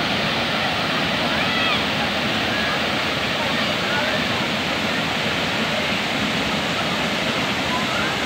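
Steady rush of a waterfall pouring over rock ledges into shallow water, with faint voices of people in the water.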